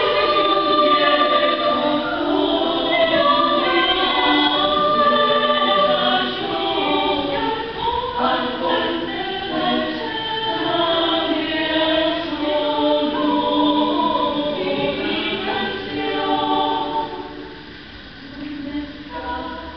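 Women's choir singing in several voice parts, holding and moving between sustained notes; the sound drops away briefly near the end as a phrase closes.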